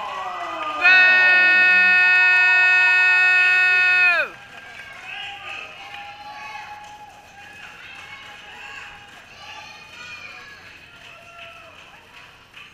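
A person's long, loud, high-pitched yell, held steady for about three seconds and dropping off in pitch at the end, followed by faint scattered voices from the small crowd.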